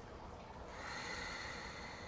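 A faint, slow, deep breath: a soft rush of air that swells about half a second in and eases off near the end.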